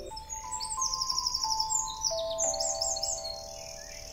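A songbird singing rapid runs of high, chirping notes, over soft background music with long held notes.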